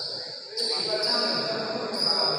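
Court sounds of a badminton doubles match in a sports hall: a high, steady tone that jumps in level about half a second in and again near the end, with a person's voice calling out from about half a second in.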